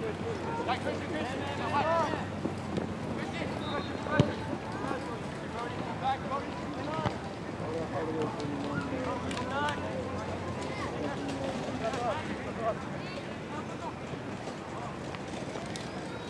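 Scattered distant shouts and calls from players and sideline across an open soccer field, over a steady outdoor background, with a single sharp thump about four seconds in.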